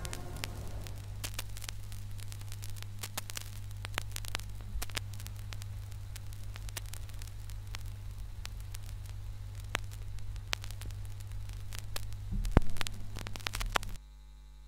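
Stylus running in a vinyl record's run-out groove after the music has ended: a steady low hum with scattered clicks and pops of surface noise. Near the end a few louder thumps as the tonearm lifts, then the sound cuts off suddenly.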